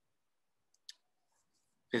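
Near silence broken by one faint, short click about a second in; a man's voice starts right at the end.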